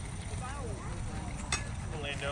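Faint distant voices of players and spectators over a steady low rumble, with one sharp click about a second and a half in.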